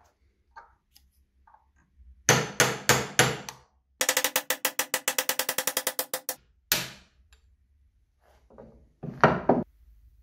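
Hammer striking a steel pin punch set in the centre hole of an old faucet handle clamped in a bench vise, knocking out the piece in its centre. There are a few separate ringing blows, then a fast even run of about ten blows a second lasting over two seconds, one more blow, and a short group of blows near the end.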